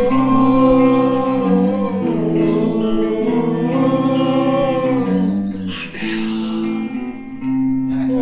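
A man singing a gliding, sustained melody over electric guitar chords and bass guitar, a small band rehearsing live. The music eases briefly about six seconds in.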